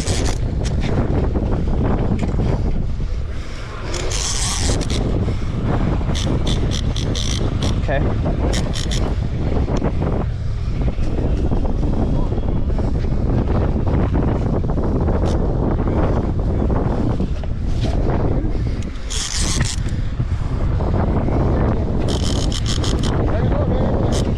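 Wind buffeting the microphone, a steady low rumble, with four short runs of rapid high-pitched clicking.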